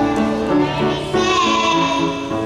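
Children singing a song with instrumental accompaniment; a long held note comes in about halfway through.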